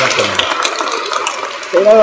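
Audience applauding, the clapping slowly dying down.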